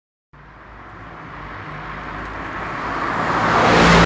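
Car engine and road noise that starts a moment in and grows steadily louder for about three and a half seconds, then cuts off suddenly.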